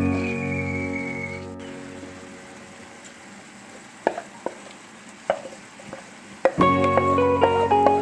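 Vegetables sizzling faintly in a frying pan while cooked rice is tipped in, with a few short clicks of spoon and bowl against the pan. Background music fades out over the first two seconds and comes back in near the end.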